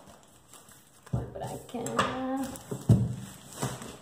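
Grey plastic courier mailer wrapping crinkling and crackling as it is pulled off a cardboard box by hand, with sharp crackles about a second in, at two seconds and near three seconds, the last the loudest. A woman's voice is heard over it after the first second.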